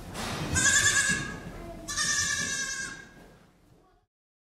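Goats bleating: two long bleats about a second and a half apart, fading out near the end.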